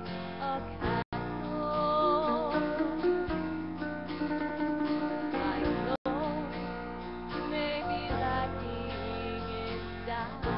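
A woman singing a slow gospel solo with vibrato into a handheld microphone, over guitar accompaniment. The sound drops out for an instant about a second in and again at about six seconds.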